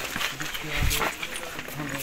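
Background chatter of several people's voices, with a brief low thump about a second in.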